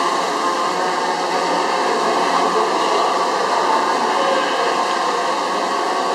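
DJI Phantom 3 Professional quadcopter hovering close by, its four propellers giving a steady whirring drone.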